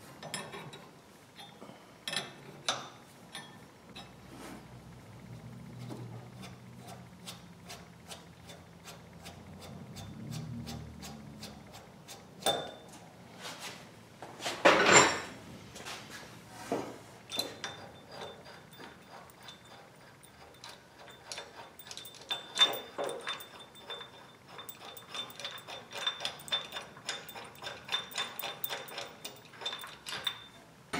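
Harmonic balancer being pulled off the crankshaft with a bolt-type puller: scattered metal clicks and clinks as the wrench turns the forcing screw. There is a louder clank about 15 seconds in, and a run of quick ticks through the second half.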